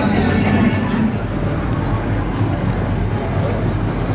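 A car driving slowly past, a steady low engine and road rumble, with people talking in the background.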